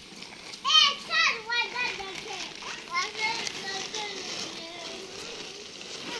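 Young children's voices: two loud, shrill calls just under a second in, then quieter chatter.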